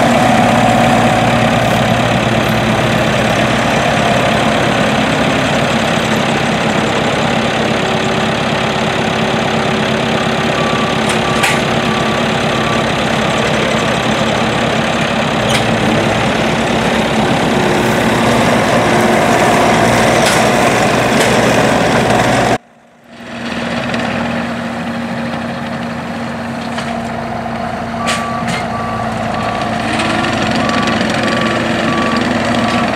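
Takeuchi TL150 tracked skid steer loader's diesel engine running steadily under load while it works a bale grapple. Its reversing alarm beeps in two short runs, once about a third of the way in and again near the end. The sound cuts out for a moment about three-quarters of the way through.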